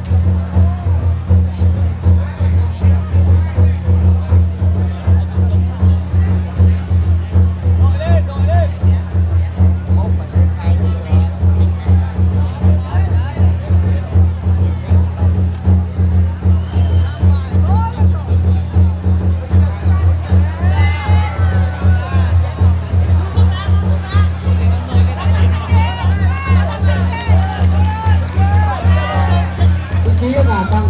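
Fast, steady drumming at about three beats a second, the music of a folk wrestling bout, with crowd voices calling out more in the second half.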